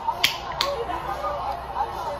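Two sharp snaps of the hands about a third of a second apart, over faint background voices.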